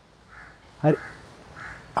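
A crow cawing twice, faint and in the background, about half a second in and again near the end.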